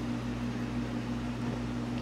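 Steady low hum with a faint hiss from running reef-aquarium equipment, even and unchanging throughout.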